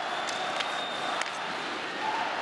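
Steady crowd noise in an ice hockey arena, with a few sharp clicks of sticks and puck on the ice.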